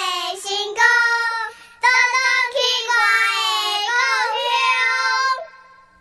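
A child singing a line of a Minnan (Hokkien) song unaccompanied, in a few held phrases with wavering pitch, trailing off shortly before the end.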